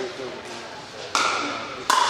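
Pickleball paddles striking a plastic pickleball twice, about three quarters of a second apart, each a sharp hollow pop with a short ring that carries in the large hall.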